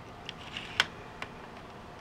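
A few light, sharp clicks, the loudest a little under a second in, as a die-cast Hot Wheels car is handled and fitted into the plastic starting gate of a 1981 Hot Wheels Photo Finish race set.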